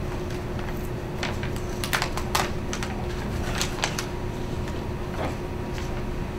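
Scattered light clicks and taps of papers being handled on a table, over a steady low room hum.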